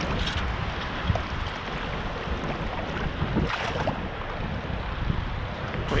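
Shallow sea water sloshing and wind on the microphone, with two brief splashes, one just after the start and one past the middle, as a sand scoop is worked in the water to dig out a target.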